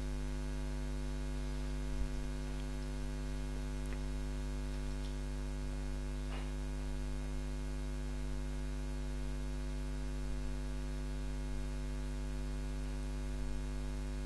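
Steady electrical mains hum with a stack of harmonics, carried on the recording's audio. A few faint clicks come through it.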